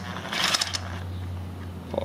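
Small Makita 12-volt cordless power tool running steadily with a low hum, unscrewing the cap plug from the centre of a camshaft sprocket, with a short rattle about half a second in.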